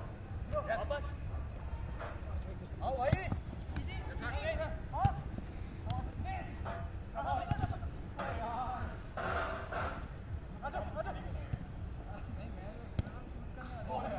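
Football players shouting and calling to each other during a game, with a few sharp thuds of the ball being kicked, the loudest about five seconds in.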